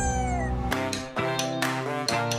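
Television show music: a held pitched note slides down and ends about two-thirds of a second in. A rhythmic tune with plucked notes and a regular beat then starts.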